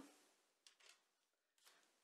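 Near silence, with three faint, brief rustles of gloved hands handling a cut slice of rolled filo börek.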